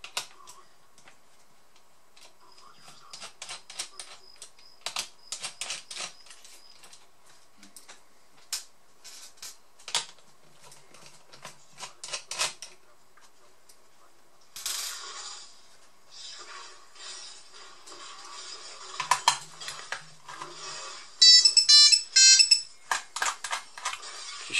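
Small clicks and taps of a screwdriver and screws on a laptop's plastic base, then, about 21 seconds in, a mobile phone ringtone sounds loudly for about two seconds.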